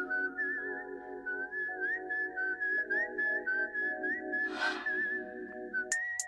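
Background music: a whistled lead melody that wavers up and down over sustained chords changing about once a second, with a steady pulsing beat underneath.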